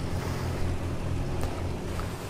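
Steady outdoor marina ambience: a low, even hum under a hiss of wind on the microphone.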